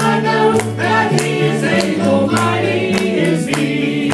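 Gospel vocal group singing in harmony over instrumental backing, with a steady beat.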